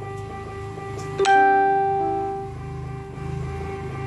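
Portable electronic keyboard played slowly, one note at a time. A louder note is struck about a second in and rings away, with softer single notes around it.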